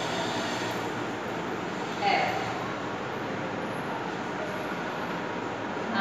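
Steady background noise with no rhythm, holding level throughout, and a short spoken syllable about two seconds in.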